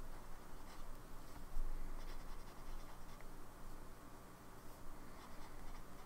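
Broad-nibbed Lamy Safari fountain pen writing on paper: the quiet, continuous scratch of the nib forming words, with a brief low thump about one and a half seconds in.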